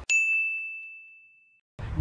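A single bright 'ding' sound effect: one high, clear tone struck once that rings out and fades away over about a second and a half.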